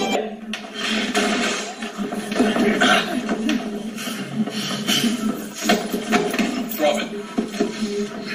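Indistinct voices with music underneath, thin and lacking bass.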